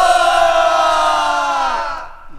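A man's voice holding one long drawn-out shout for about two seconds, rising into it at the start and trailing off near the end.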